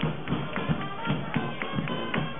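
Live brass band music in a street crowd: horns holding notes over a steady drum beat of about three beats a second.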